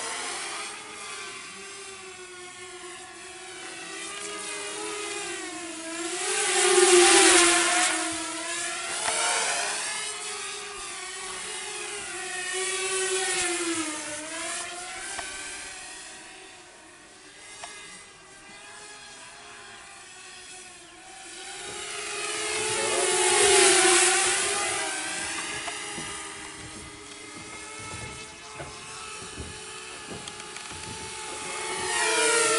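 Walkera F210 FPV racing quadcopter buzzing in flight, its motor-and-propeller pitch wavering with the throttle. It passes close twice, about a quarter of the way in and again about three-quarters through, louder each time and dropping in pitch as it goes by.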